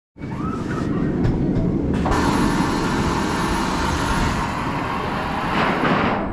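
A channel intro sound effect under the logo animation. A rumble turns abruptly, about two seconds in, into a bright hiss with a thin, steady high whistle, and it swells just before the end.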